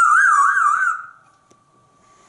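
African grey parrot giving a loud warbling whistle in answer to "what's a turkey?", his imitation of a turkey. The pitch wavers up and down quickly for about a second, then fades out.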